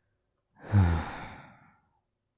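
A man's deep sigh, with a voiced start that trails off into breath. It begins about half a second in and fades over about a second.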